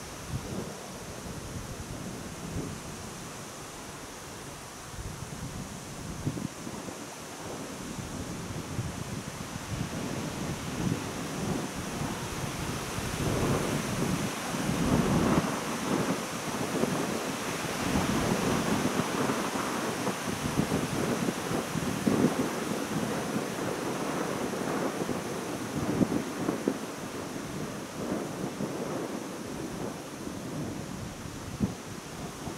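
Wind buffeting the microphone in uneven gusts, a low rumbling noise that grows stronger about ten seconds in.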